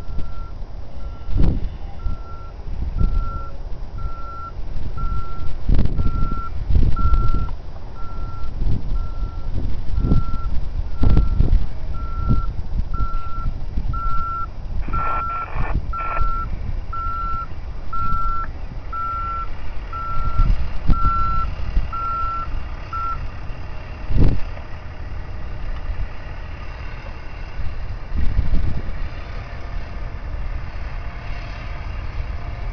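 Hi-rail maintenance truck's backup alarm beeping steadily about once a second while the truck reverses, stopping a little over three-quarters of the way through. Irregular low thumps and rumble run underneath.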